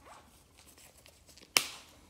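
Faint rustling handling noise, then a single sharp click about one and a half seconds in.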